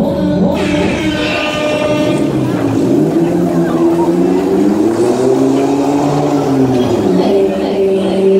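Ghost Rider fairground thrill ride running, a loud continuous sound made of several steady tones that slowly rise and fall in pitch, swelling up and back down between about five and seven seconds in.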